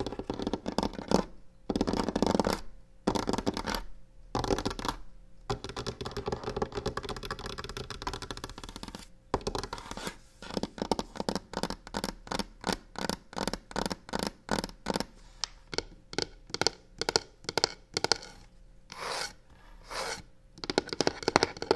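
Long fingernails scratching and tapping fast on a wooden tabletop and a textured box. Longer scratching strokes fill the first half, then a quick run of sharp taps, several a second, through the second half.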